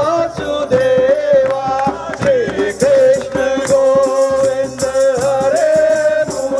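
Men singing a Hindu devotional hymn (bhajan), the lead voice amplified through a microphone, over a steady beat of a hand-shaken jingle rattle and hand claps.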